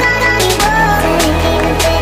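Background music with a steady beat and a bass line that drops to a lower note about half a second in.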